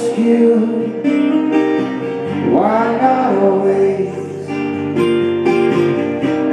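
Two acoustic guitars strummed in a live acoustic performance, with a male voice singing a bending, held line a little before halfway.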